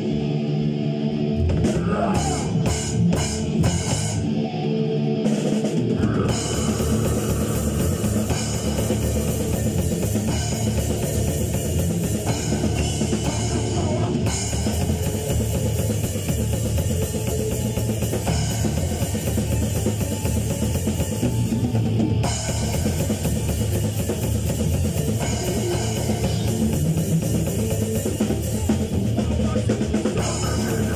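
Rock band playing live in a rehearsal room: drum kit with bass drum and cymbals under electric guitars. For the first few seconds there are separate sharp hits with gaps, then the full band plays on continuously from about six seconds in.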